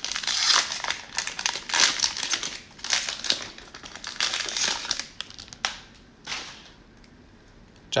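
Plastic wrapper of a football-card cello pack crinkling in bursts as it is torn open and pulled off the stack of cards. It dies away about six and a half seconds in.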